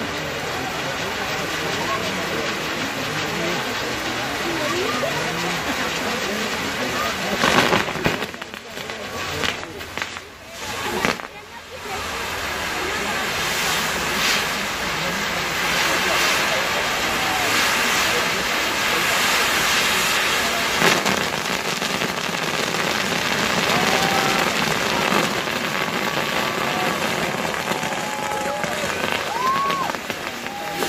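Castillo fireworks tower burning: its spark fountains give a steady loud hiss and crackle, with a sharp bang about eight seconds in and another pop about twenty-one seconds in. Crowd voices run underneath.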